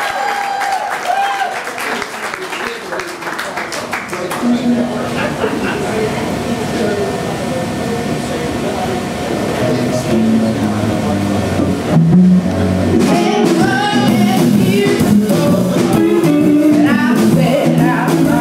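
A live blues band starting a song: after a few seconds of crowd noise and talk, bass and electric guitar come in about four seconds in, the full band with drums builds up and gets louder around ten to twelve seconds, and a woman's singing joins near the end.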